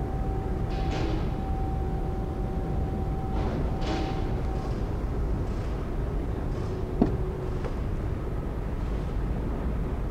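Steady low rumble of indoor room tone with a faint steady hum, broken by one sharp click about seven seconds in.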